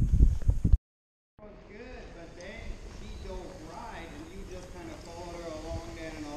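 A loud low rumble that cuts off abruptly about a second in; after a short silence, a faint voice talking far off in an echoing covered arena.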